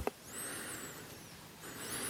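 Two soft breaths, each an airy swell lasting about a second, one after the other.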